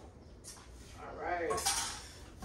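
A short murmur of a voice about a second in, then a light clink of kitchenware near the end.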